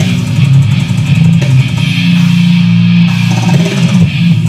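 Loud live slamming porngrind: heavy guitar and drums, with a long held low chord about halfway through.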